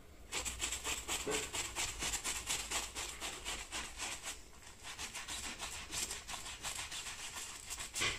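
Stiff plastic-bristled hand brush scrubbing a dirty spot on a fabric sofa armrest, bristles rasping on the upholstery in quick, short back-and-forth strokes.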